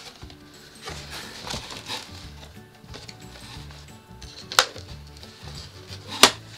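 A cardboard doll box being handled and opened: soft scraping and rustling, then one sharp knock about two-thirds of the way in. Faint music plays underneath.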